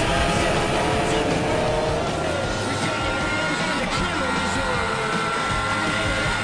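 Race car's 1.6-litre K-series four-cylinder engine pulling under load on track, its note shifting about two seconds in and then rising slowly, heard onboard under background music.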